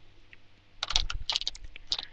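Small glass nail polish bottles clicking and clinking together as they are put down and picked up: an irregular run of light clicks starting about a second in.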